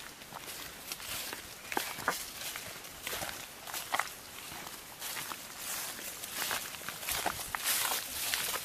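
Footsteps of several people walking on a dirt path strewn with dry leaves: irregular crunches and scuffs.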